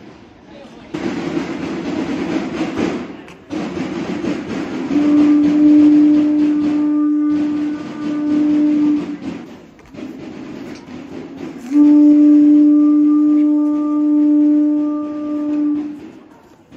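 Two long, steady horn-like notes on the same pitch, each held about four seconds. The first comes over a dense rattling noise that begins about a second in.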